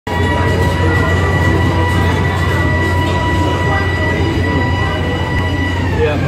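A Ferris wheel's drive machinery running: a steady high whine over a low rumble, the whine dropping slightly in pitch near the end as it slows.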